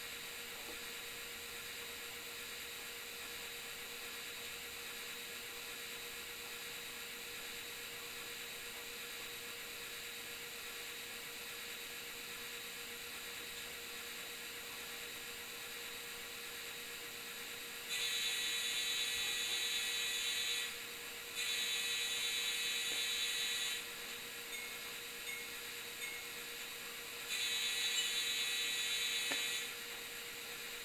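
Model diesel horn from an N-scale sound box car's Digitrax SDN144PS decoder with a GE AC4400 sound file, played through a tiny speaker: three long, steady blasts about 18, 21 and 27 seconds in, over a constant low hum. It sounds a little quiet because the box car's doors are not sealed yet.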